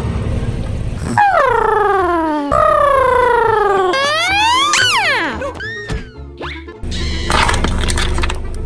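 Cartoon sound effects over background music: two long falling pitch glides like a slide whistle, then a rising glide and a few short boings, with the bass-heavy music coming back near the end.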